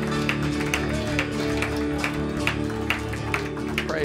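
Live church band playing an instrumental passage: electric guitars and bass holding sustained chords over drums, with a steady beat of about two hits a second.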